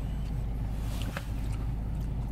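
Opel car engine idling with a steady low hum, heard from inside the cabin, with a couple of faint clicks about a second in.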